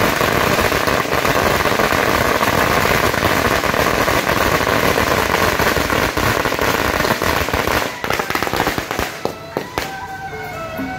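A long string of firecrackers going off in a dense, continuous crackle that thins to scattered single bangs near the end.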